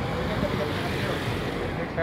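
Faint voices talking over steady outdoor noise.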